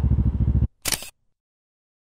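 Motorcycle engine running with wind noise on a helmet-mounted camera, cutting off suddenly about two-thirds of a second in. A brief camera-shutter click follows.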